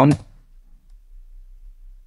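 Faint computer keyboard keystrokes as text is deleted and retyped, over a low steady hum.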